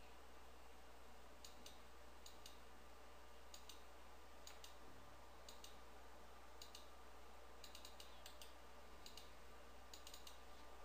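Faint clicks of a computer mouse and keyboard, several in quick pairs and a short run of them near the end, over a low steady hum.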